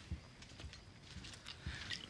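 A few faint, soft footsteps, heard as low knocks about a second apart over quiet room tone.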